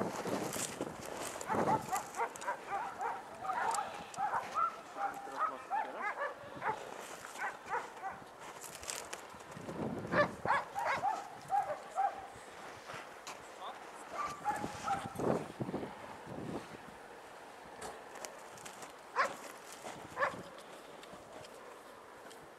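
Indistinct voices of people talking at a distance, in short bursts with pauses, with a few sharp thuds among them.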